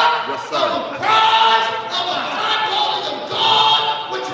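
Voices singing together in loud phrases of about a second each.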